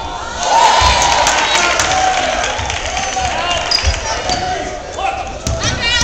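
Spectators shouting and cheering in a school gym, getting louder about half a second in, with a basketball bouncing on the hardwood court now and then.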